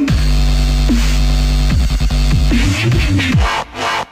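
Dubstep music. A deep bass note is held for the first second and a half or so, followed by quick downward-sliding bass swoops, and the track briefly drops out just before the end.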